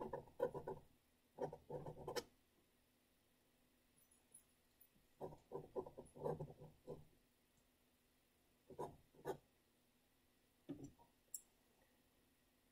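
Paintbrush with oil paint scrubbing across loose canvas: faint scratchy strokes in several short bursts, with pauses between.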